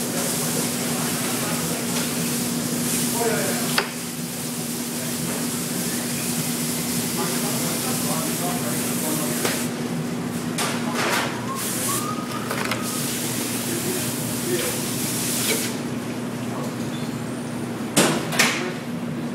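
Steady hiss and low hum of room noise, with faint voices in the background and a few short knocks.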